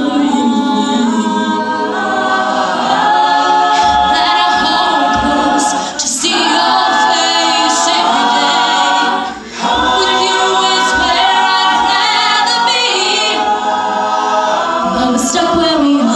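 A co-ed a cappella group singing live: mixed voices hold sustained chords behind a female lead singer. The sound drops briefly between phrases about six seconds and nine and a half seconds in.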